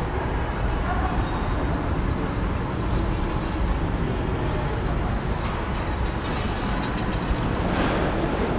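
Steady low rumble of a large indoor public space, with a faint murmur of people's voices underneath.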